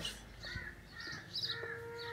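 Crows cawing with smaller birds chirping in short repeated calls, and a steady held tone coming in about halfway through.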